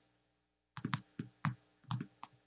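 Computer keyboard keystrokes: about five irregular clicks starting just under a second in.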